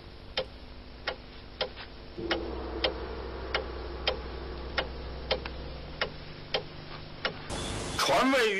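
Dramatic ticking, like a clock, about three ticks every two seconds, over a low sustained drone that swells about two seconds in.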